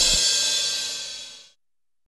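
Closing music sting ending on a cymbal crash that rings and fades out about a second and a half in.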